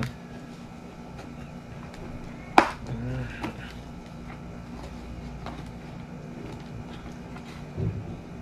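A single sharp plastic click about two and a half seconds in, as a snap button of a KYT motorcycle helmet's liner is pressed home into the shell, followed by a short murmur and a few faint handling taps.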